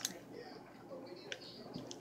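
Faint wet mouth sounds of a child chewing firm gummy candy, with a few small clicks and smacks.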